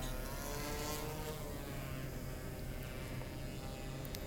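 DJI Matrice quadcopter drone's rotors spinning up and lifting off: a steady buzzing hum whose pitch rises in the first second, then holds.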